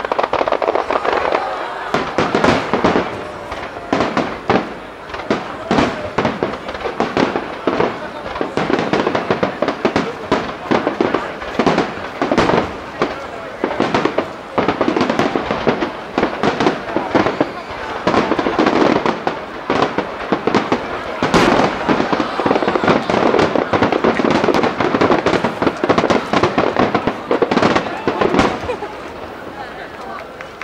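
Aerial firework shells bursting in quick succession, many sharp bangs close together and overlapping, thinning slightly near the end.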